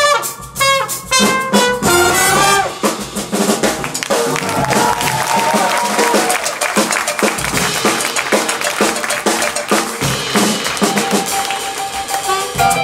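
Live big band playing: a trumpet solo over the drum kit at the start, then the full band of brass and saxophones in a dense passage with busy drumming, settling into held chords near the end.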